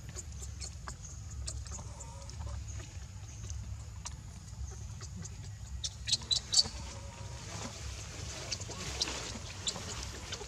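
Faint animal calls over a steady low rumble, with a quick cluster of short, sharp, high-pitched squeaks about six seconds in.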